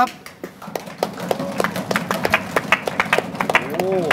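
Hand clapping: many quick, uneven claps from a few people, with a brief voice near the end.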